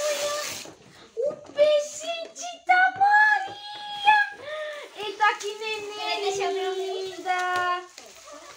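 Excited children's and adults' voices: short high-pitched exclamations and one long held, sung-like note near the end. Plastic gift wrap crinkles in the first moment as a present is unwrapped.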